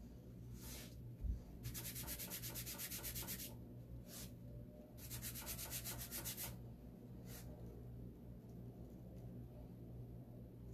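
Plastic squeegee rubbed quickly back and forth over a silk-screen transfer on a board, a faint dry scraping. It comes in two runs of about eight strokes a second, with a few single strokes between and a light bump about a second in.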